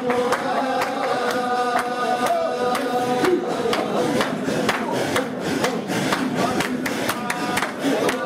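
A group of men chanting together in unison, a Sufi dhikr, with long held notes that shift in pitch about three seconds in. Sharp clicks run through it, thickest in the second half.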